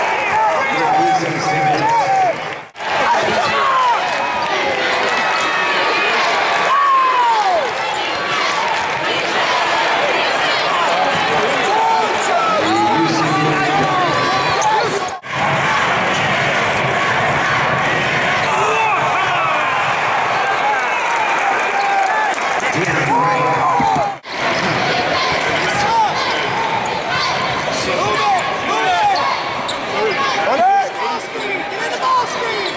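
Live basketball game sound on a hardwood court: many short sneaker squeaks and the thump of the ball being dribbled, over a steady background of arena voices. The sound drops out briefly about three, fifteen and twenty-four seconds in.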